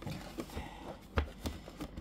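Cardboard toy box being handled and pried at, with a few light knocks and taps, the clearest a little over a second in. The box is not opening easily.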